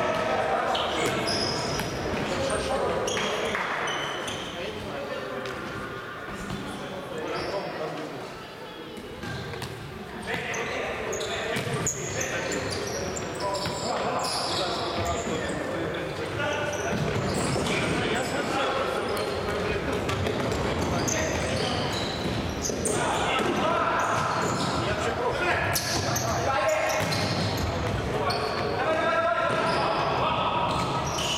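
Futsal being played on an indoor hard court: the ball is kicked and bounces off the floor again and again while players call out to each other, all echoing in a large sports hall.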